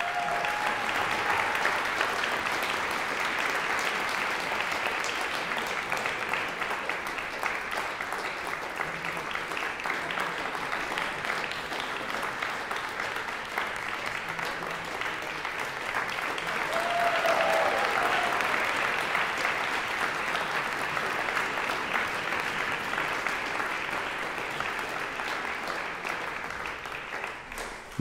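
Audience applause in a hall: steady clapping that swells about two-thirds of the way through, then thins out towards the end.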